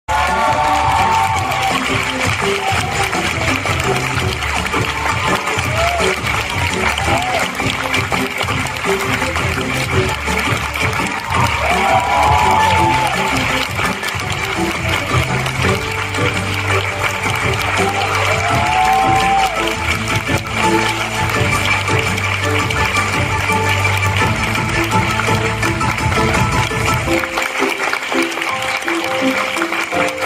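Musical-theatre music with a pulsing bass line plays over a theatre audience applauding, with a few voices calling out. The bass cuts out near the end while the clapping goes on.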